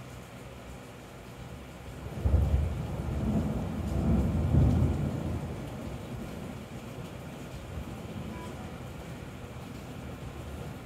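Thunder: a rumble breaks in suddenly about two seconds in, swells a second time a couple of seconds later, then rolls away over a few seconds, over a steady background hiss.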